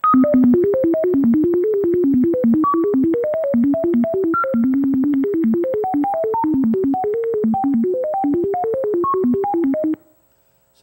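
Computer-generated melody of pure sine tones: a fast run of short notes jumping between low and high pitches, with a click at each note change. Each note's pitch is set by a successive spacing drawn from the Poisson distribution, which gives many high notes. It starts and cuts off abruptly.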